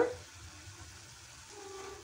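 Faint, steady sizzle of grated carrots cooking in a steel frying pan on a gas stove.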